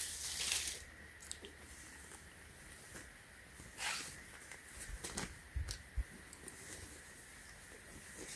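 Soft rustling of a cotton T-shirt and its plastic packaging being handled and unfolded. There is a brief louder rustle at the start, then scattered faint rustles and light ticks.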